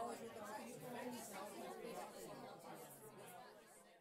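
Faint chatter of people's voices, fading into near silence about halfway through.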